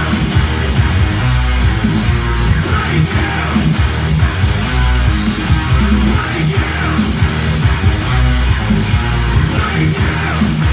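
Electric guitar playing a heavy metal riff along with the song's recorded backing track.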